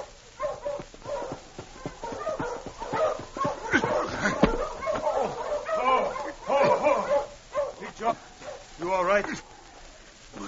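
Sled dogs barking and yelping in a radio-drama sound effect, with many short calls and a drawn-out falling yelp near the end.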